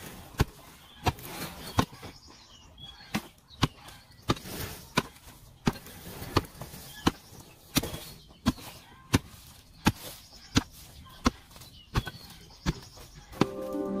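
A heavy digging hoe striking hard, dry earth: a steady rhythm of dull, sharp blows, about three every two seconds. Soft music comes in just before the end.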